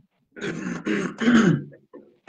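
A man clearing his throat: a rough, throaty sound in two or three pulses lasting just over a second.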